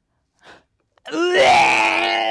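A woman gagging: a short breath, then, about a second in, a loud, drawn-out retching groan from the stench of the opened surströmming (fermented herring).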